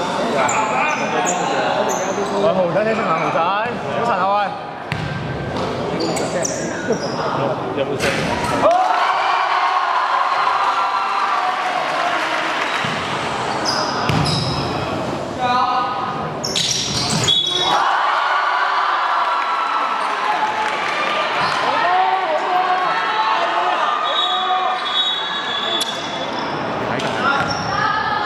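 A basketball bouncing on a wooden gym floor, among players and spectators talking and calling out, all echoing in a large hall.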